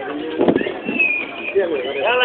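Several people's voices calling out and talking across an open gathering, with a brief thin high whistle-like tone about halfway through.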